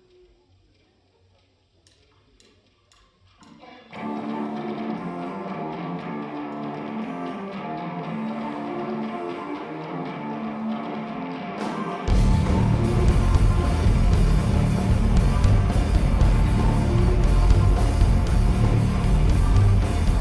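Live rock band starting a song: after a near-quiet pause with a few faint clicks, a guitar plays a riff alone from about four seconds in, then drums and bass guitar come in together, much louder, about twelve seconds in.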